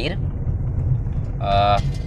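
Steady low rumble of a car driving, heard from inside the cabin. A short voiced sound from a person comes about one and a half seconds in.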